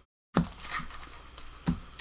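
Wax paper wrapper of a baseball card wax pack being torn open and crinkled by hand, with two sharper crackles, one just after a brief dropout at the start and one near the end.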